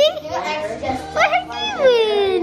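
A young child's high-pitched wordless vocalizing, sliding up and down in pitch, with a long falling squeal near the end.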